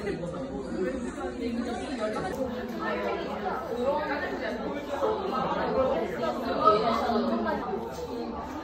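Indistinct chatter of many people talking at once in a cafe, a steady babble of voices with no single voice standing out.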